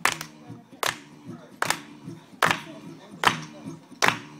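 Acoustic guitar played in a steady rhythm, sustained chords with a sharp, accented hit on each beat about every 0.8 seconds, five hits in all.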